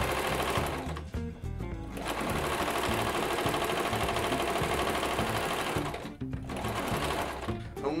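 Singer electric sewing machine stitching felt: a run of about a second, a short pause, then a longer run of about four seconds before it goes quieter.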